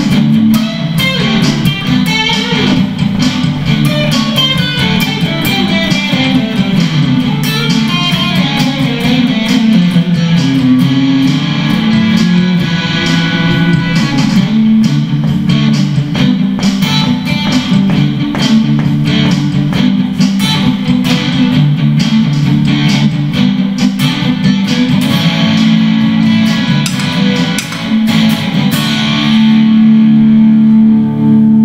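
Electric guitar played as an instrumental passage: a continuous run of quickly picked notes with slides, steady and loud throughout.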